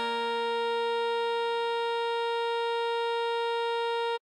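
Alto saxophone sound, played back by the tutorial's synthesized backing, holding one long note: written G5, sounding concert B-flat. A lower accompaniment note sounds under it and fades away about halfway through.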